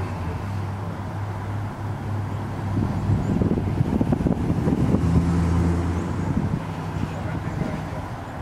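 Roadside vehicle noise: a low, steady engine hum, with a vehicle going by that swells and fades between about three and six and a half seconds in.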